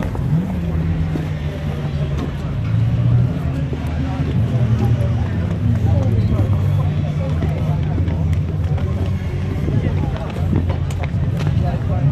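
Racing car engines running at low, steady revs on the circuit, with a brief rise and fall in revs about half a second in and again near the end, under spectators' chatter.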